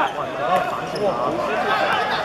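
Several players and spectators shouting and calling out over one another during a football match, with thuds of the ball being kicked.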